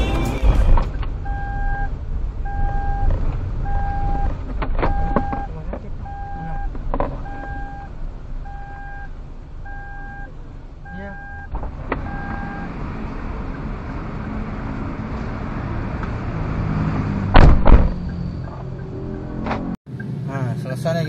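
Car warning chime beeping steadily about once a second for roughly eleven seconds, heard inside the moving car over the engine and road hum, then stopping; scattered knocks and one loud thump near the end.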